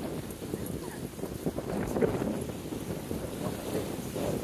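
Wind buffeting the microphone, over the wash of choppy waves against the rocks below a pier.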